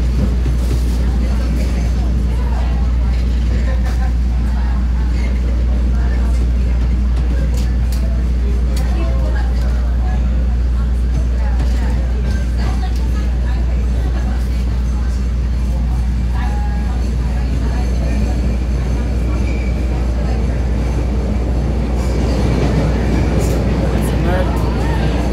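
CTA Red Line subway train running through a tunnel: a steady, loud rumble of wheels on rail with a deep, even drone underneath.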